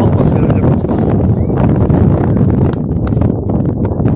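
Wind buffeting the microphone, a dense low rumble with scattered knocks, over faint distant voices.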